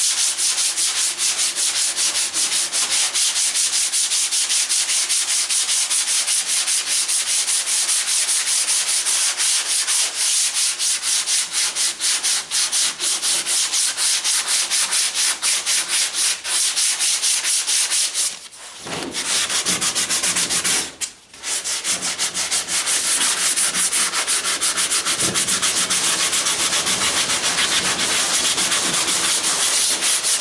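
Hand sanding block with 80-grit paper rubbed back and forth over a primed car fender in quick, steady strokes, cutting the guide coat and orange peel off the filler primer. The strokes stop briefly twice about two-thirds of the way through.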